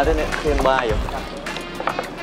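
Brief speech over background music, then a short click near the end.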